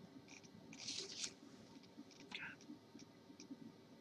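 Near silence: room tone, with a few faint, short noises about a second in and again past the middle.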